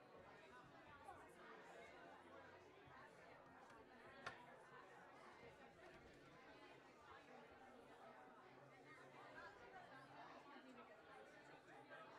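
Faint, indistinct chatter of several people talking at once, with one sharp click about four seconds in.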